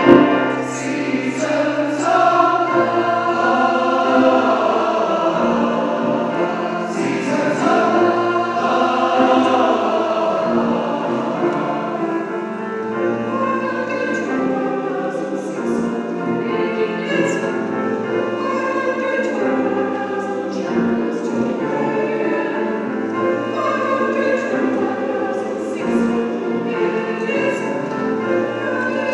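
A mixed choir of adults and children singing together, many voices moving from note to note.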